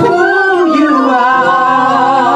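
Several women singing a long held note together into microphones, with vibrato, the pitch sliding down partway through, in gospel praise style.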